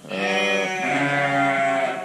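A lamb bleating: one long call of nearly two seconds, its pitch shifting once partway through.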